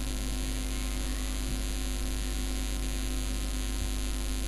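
Steady electrical mains hum with an even hiss underneath, a constant buzz in the recording with no other distinct sound.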